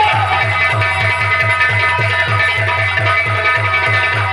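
Nautanki stage band playing a fast, even drum beat of about four strokes a second on nagada and dholak drums, under held melody notes.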